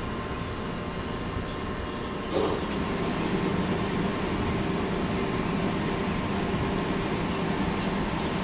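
A steady low room rumble, with the faint scratching of a dry-erase marker writing on a whiteboard. A soft knock comes about two and a half seconds in.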